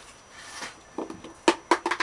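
A few light clicks and knocks of plastic cups being handled and set down on a wooden board, starting about a second in.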